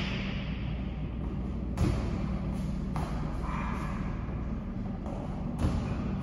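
Feet landing on a plyometric box during box jumps: two heavy thuds, about two seconds in and again near the end, over a steady low hum.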